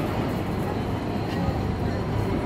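San Francisco cable car rolling slowly along its rails: a steady low rumble.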